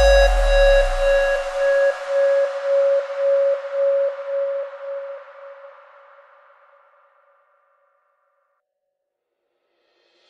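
Background electronic music fading out: a single held synth tone with a light steady pulse dies away over the first six or seven seconds, leaving silence.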